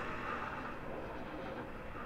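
Steady background noise with no distinct events.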